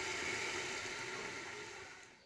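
Onion-tomato masala with green chillies sizzling as it fries in oil in a pot, a steady hiss that fades away near the end.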